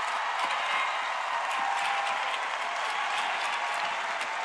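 Large indoor congregation applauding steadily.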